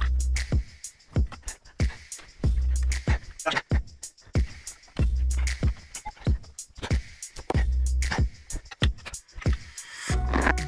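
Background music with a steady beat: a deep bass note about every two and a half seconds under quick, crisp percussion hits.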